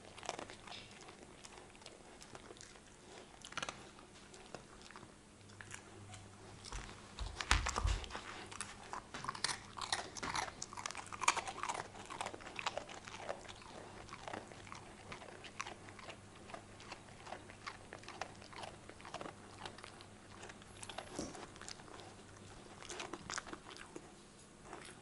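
Siberian husky puppy chewing and crunching something dry and brittle, in irregular small crunches, with one dull thump about seven and a half seconds in.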